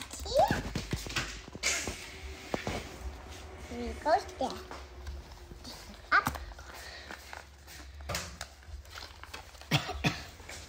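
Brief children's voice sounds mixed with small handling noises: scattered taps and rustles as paper stickers are peeled and pressed onto a cardboard disc.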